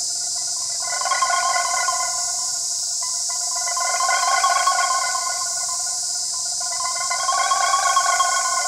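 Pre-recorded electronic sounds played over loudspeakers: several held tones layered together that swell and fade about three times, over a steady high hiss.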